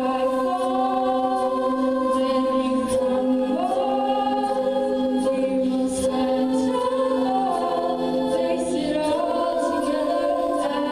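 Treble-voiced female a cappella group singing in close harmony through microphones, holding sustained chords while inner lines shift, with one voice sliding up into a higher note a few seconds in.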